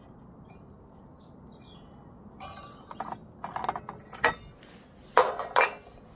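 Birds chirp faintly for the first two seconds. Then comes a run of sharp clinks and knocks from hands handling the streetlight fitting and its lamp, the loudest near the end.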